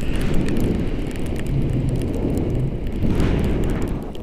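Wind buffeting the microphone during a paraglider flight: a loud, gusty low rumble.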